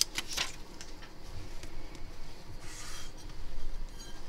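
Clear plastic sheet of OCA adhesive film rustling and crinkling as it is handled, in two short bursts: one just after the start and a longer one about two and a half seconds in.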